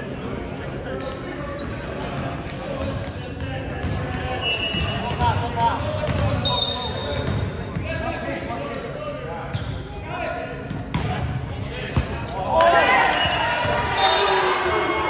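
Indoor volleyball in an echoing gymnasium: players calling to one another, with sharp smacks of the ball being hit and bouncing on the hardwood. Near the end the players break into loud shouting and cheering as a point is won.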